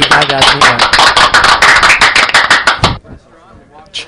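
Hand clapping close by: a loud run of quick claps over the tail of a voice, cutting off suddenly about three seconds in.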